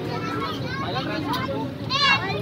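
Young children's voices, chattering and calling out as they play, over a steady low background rumble.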